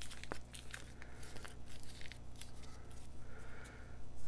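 Light rustling and scattered small clicks as a paper roll of stickers is handled and turned in the hands.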